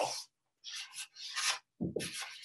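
Felt-tip marker drawing on flip-chart paper: several short scratchy strokes of the tip rubbing across the paper, each about half a second long.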